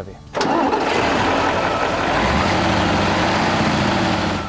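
Air-cooled V8 diesel engine of a Magirus-Deutz 230 D 22 AK truck running loud and steady, with the rush of its engine-driven cooling fan; it cuts in abruptly about half a second in.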